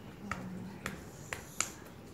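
Four sharp, irregularly spaced clicks or taps in a quiet room.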